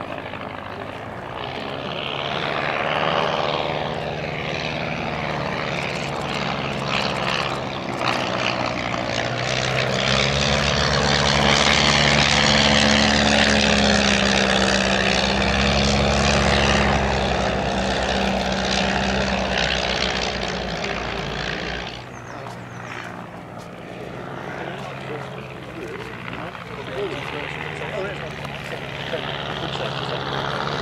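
Two vintage biplanes, a Blackburn B-2 with its Gipsy Major engine and a de Havilland DH60X Moth, flying past together, their piston engines and propellers droning. The sound builds to its loudest in the middle as they pass low, the engine note drops slightly in pitch, and about two-thirds of the way through the level falls away suddenly.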